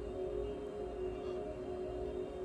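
Ambient music playing: a steady drone of several held tones, like a singing bowl.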